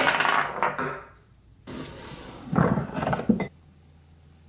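Metal parts of an antique Alemite grease gun clattering on a wooden workbench as the spout and its steel washer are pried free of the body, the washer dropping with a brief metallic ring. A second run of clatter and knocks follows as the tools and spout are handled, cutting off suddenly about three and a half seconds in.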